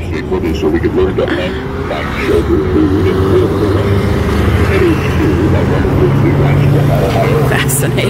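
Road traffic: a motor vehicle's engine grows louder from about two seconds in and rises slowly in pitch through the second half. A wavering voice sounds over it in the first half.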